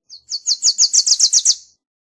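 Wilson's warbler singing one song: a rapid, even chatter of about nine high, down-slurred chips that grows louder and lasts about a second and a half.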